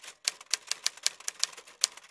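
Typing sound effect: a rapid run of sharp key clicks, about seven a second, as a caption is typed out letter by letter.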